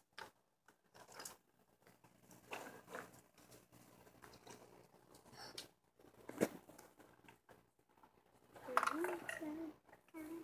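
Irregular rustling and crinkling, with one sharp click about six and a half seconds in and a brief voice near the end.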